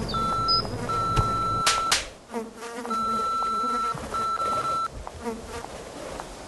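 A high, thin whine that stops and starts in several spells of half a second to a second, with two sharp clicks about two seconds in.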